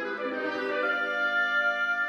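Orchestral music: a sustained chord with brass, and a bright high note joining about a second in and holding.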